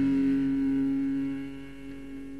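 The last held guitar chord of a punk rock song ringing out and dying away, dropping in level about one and a half seconds in.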